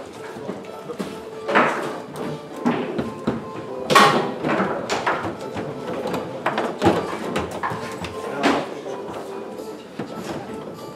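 Foosball in play on a Rosengart table: the hard ball cracks against the plastic men and the table walls, and the rods knock, in a run of sharp, uneven knocks. The loudest comes about four seconds in, with others near the start and near the end.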